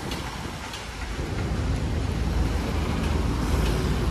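Steady low rumble of a moving car with road traffic around it, heard from inside the cabin; the noise grows a little louder after about a second.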